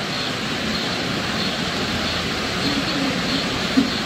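Steady rushing background noise of the hall, even throughout, with a faint voice briefly near the end.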